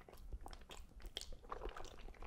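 Faint, close-up chewing of a mouthful of noodles, with small irregular wet clicks of the mouth.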